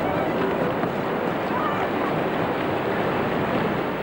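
Wind buffeting the microphone over waves washing on a beach: a steady rush of noise.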